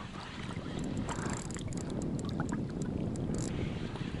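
Wind rumbling on the microphone over water sloshing, with scattered faint clicks from the fishing reel as a hooked sea bass is wound in.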